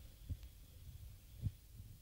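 Two soft, low thumps from a handheld karaoke microphone being handled, about a third of a second in and again about a second and a half in, over a faint steady hum from the sound system.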